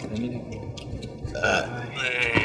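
A man burps once, a short rough burp about one and a half seconds in.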